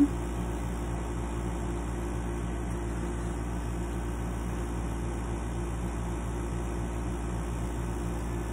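Steady low mechanical hum with no change: constant background noise from something running in the room.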